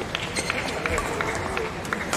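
Badminton players' shoes squeaking and scuffing on the court mat during a rally, as a quick scatter of short, sharp chirps and taps in a large hall.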